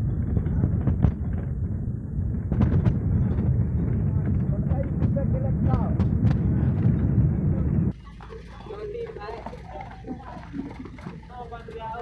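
Loud low rumble and rattling knocks of a moving bus, heard from inside. The noise drops sharply about eight seconds in, and voices then come through over the quieter running of the bus.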